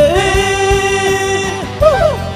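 Karaoke singing: a singer holds one long note at the end of a sung line over a pop-rock backing track, then a short rise and fall in pitch near the end as the accompaniment carries on.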